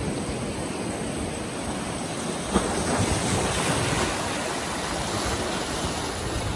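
Sea surf washing and breaking on a rocky shore, a steady rush of waves, with one brief knock about two and a half seconds in.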